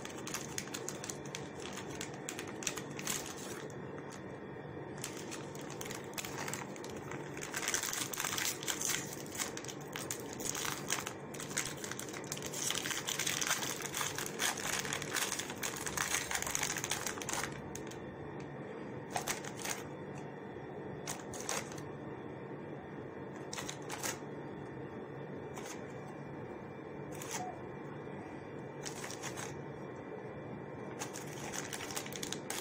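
Plastic biscuit wrappers crinkling and rustling, loudest and densest through the middle, with scattered clicks and taps as biscuits are handled and laid in a glass dish, over a steady low hum.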